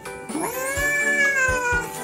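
One long, high-pitched cry, rising and then falling, like a meow, over cute background music.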